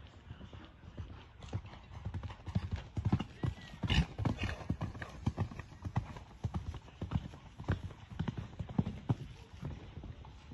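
Hoofbeats of a bay mare cantering on a sand arena footing: a quick run of soft thuds, loudest about three to four seconds in as she passes close by, then fading as she moves away toward a jump.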